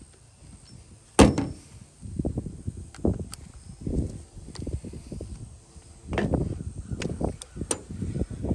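Clicks and knocks from handling a cordless impact driver: a step drill bit being pulled from its quick-release hex chuck and a quarter-inch drive adapter fitted in its place. A single sharp click about a second in is the loudest sound, with softer handling knocks and a few small clicks after it.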